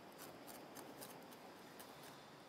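Near silence: a faint hiss with scattered light clicks, a few every second.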